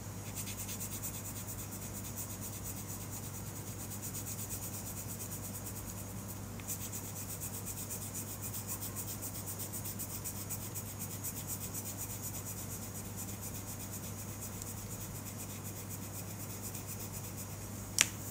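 Colored pencil shading on paper: continuous rapid back-and-forth scratching strokes of the pencil lead. A steady low hum runs underneath.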